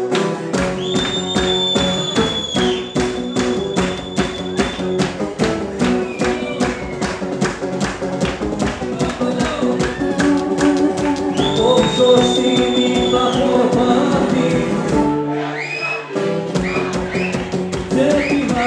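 Live Greek band playing an instrumental passage on plucked string instruments such as bouzouki, with steady rhythmic hand-clapping keeping the beat. The low notes and clapping drop out briefly about fifteen seconds in, then start again.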